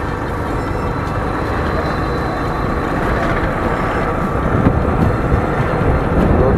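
Steady road and wind noise from riding along a road, with a vehicle's motor running underneath.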